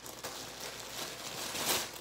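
A sheet of tissue paper rustling and crinkling as it is handled and unfolded, with a louder rustle near the end.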